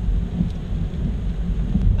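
Car cabin noise while driving on a wet road in the rain: a steady low rumble of engine and tyres heard from inside the car.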